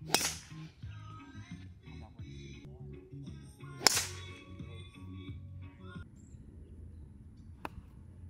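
Golf clubs striking balls off the tee: two sharp cracks about four seconds apart, and a much fainter click near the end.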